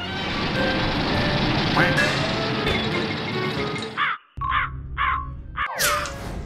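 Cartoon crow-caw sound effect: three short caws in quick succession about four seconds in. Before them is several seconds of a dense, busy mix of music and noise that stops suddenly just before the caws.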